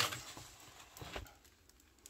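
Faint rustling of a plastic-covered diamond painting canvas being handled, fading out, then a soft low thump about a second in.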